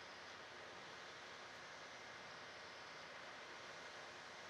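Near silence: a faint, steady hiss with nothing else.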